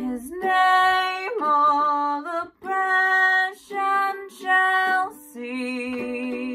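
A woman sings a slow carol melody in several held phrases with vibrato, accompanied by a strummed ukulele.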